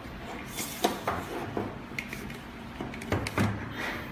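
Aluminium tripod being handled: irregular clicks and knocks of its legs and leg braces being moved and adjusted, the sharpest just under a second in.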